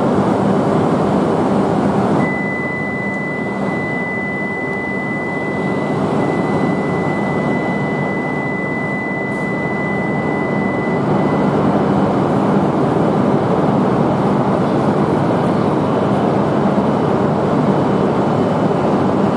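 E5 series Shinkansen train moving slowly along the platform, a steady low hum over a constant rumble. A steady high-pitched tone sounds from about two seconds in until about eleven seconds.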